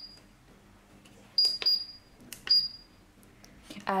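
SUGON T36 soldering station giving short, high single-tone beeps as its front-panel buttons are pressed: two in quick succession about a second and a half in, and one more about a second later. Each beep confirms a key press while the channel and temperature setting is being changed.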